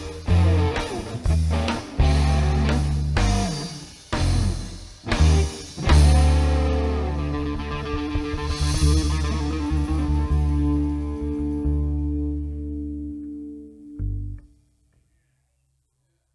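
Live rock-style band with electric guitar, bass and drums playing the end of a song: a run of short, loud stop hits, then a final chord held and slowly fading out, with one last short hit near the end.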